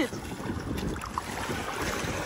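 Shallow sea water lapping and sloshing at the shore, with wind rumbling on the microphone.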